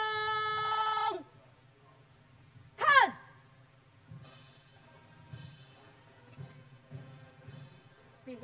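Drill commands shouted across the parade ground. A long held call breaks off about a second in, and a short, sharp command falling in pitch comes about three seconds in, as the formation steps off marching.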